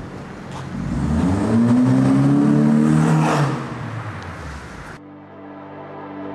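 Honda City hatchback on an aftermarket Max Racing exhaust driving up and passing close by. Its engine note builds, rises in pitch to a loud peak, then falls away as it goes past.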